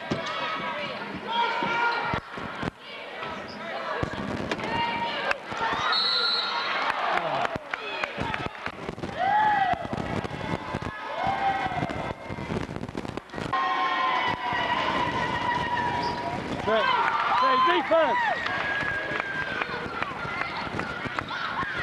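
Basketball game in a gym: spectators' voices talking and calling out, over a ball bouncing on the hardwood and sneakers squeaking on the court.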